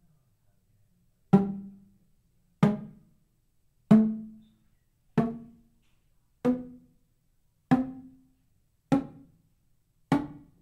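Homemade PVC pipe percussion instrument (RimbaTubes) with the open pipe ends struck by paddles, one note at a time. Seven hollow pitched notes come about one every second and a quarter, each dying away quickly and each a little higher than the last, as it plays up its scale.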